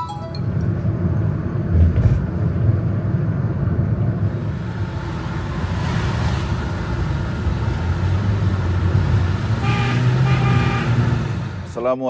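Steady road and engine rumble of a vehicle driving along a highway. A horn sounds for about a second a little before the end.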